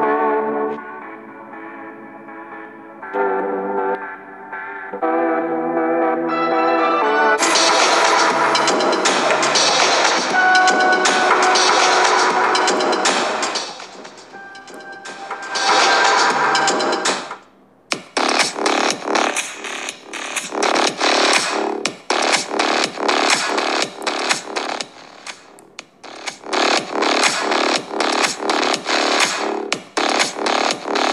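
Electronic dance music playing from a smartphone's loudspeaker, recorded close to the speaker. The volume is turned up about seven seconds in, and the music stays clean without distortion at high volume. Just before the 18-second mark the song cuts off and a different electronic track with a steady, punchy beat starts.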